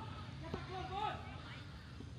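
Distant shouted calls from footballers across the pitch, with a single sharp knock about half a second in.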